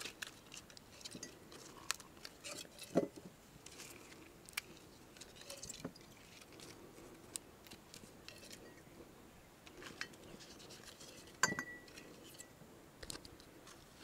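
Quiet handling sounds of oak leaves being torn and pushed into small glass jars: scattered faint clicks and light clinks of glass. The sharpest clink, about three-quarters of the way through, rings briefly.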